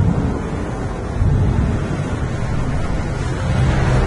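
Loud, steady rushing noise like surf or wind, with no clear notes, in an instrumental break of a song. Pitched music comes back in near the end.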